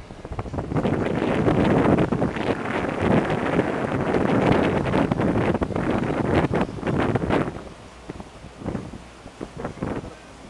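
Wind buffeting the microphone of a camera held on a moving boat: a rough, gusting rush, loud for most of the first seven seconds, then dropping lower.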